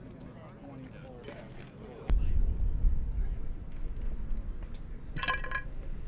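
Outdoor field ambience: faint distant voices, then a sudden louder low rumble from about two seconds in. Near the end comes a short ringing clink.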